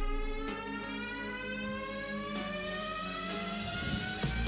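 Background music: a sustained synthesized tone rising slowly and steadily in pitch over a low, repeating pulse.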